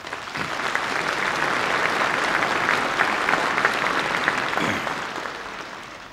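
A large hall of delegates applauding: dense clapping that swells up at once, holds steady, and dies away over the last second or two as the speech is about to resume.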